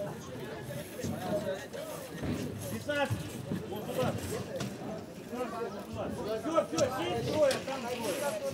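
Indistinct talk of several people, voices overlapping in low chatter with no words standing out.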